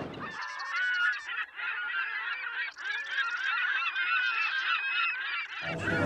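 A flock of silver gulls squawking, many short harsh calls overlapping; the chorus starts and stops abruptly.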